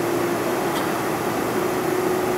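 Cabin noise inside a Boeing 747-400: its GE turbofan engines and air system running steadily as a broad rush with a steady hum, which fades for about a second midway.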